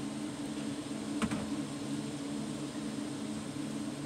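Steady mechanical hum with a few low steady tones, from a running machine such as a fan or air conditioner, with one short knock a little over a second in.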